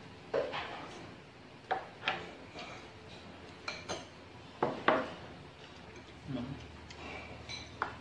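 Spoons and chopsticks clinking against ceramic rice bowls during a meal: a series of short, scattered clinks.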